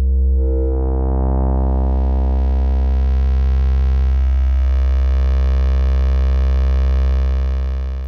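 ModBap Osiris digital wavetable oscillator holding a steady low note. Over the first second or so it grows from a near-pure sine into a bright, buzzy, harmonic-rich wave as it moves through the East Coast bank's audio-rate crossfaded waves.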